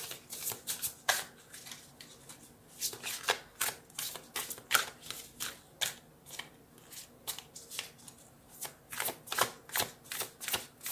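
A deck of tarot cards being shuffled by hand: runs of quick, irregular card snaps and slaps in clusters, thinning out about two seconds in and again from about six to eight seconds.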